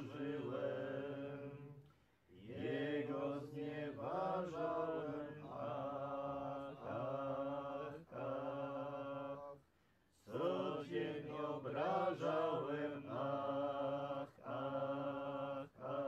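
Small group of voices singing a Polish penitential hymn unaccompanied, in slow, long-held phrases. The singing breaks off briefly about two seconds in and again near ten seconds.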